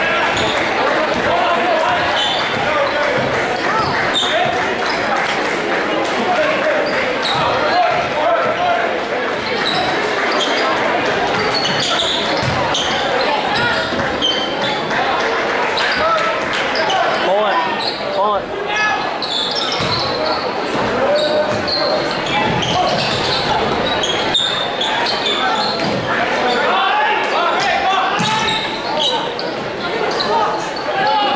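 Spectators talking over one another in a gymnasium with a basketball bouncing on the hardwood court, in a large room's echo.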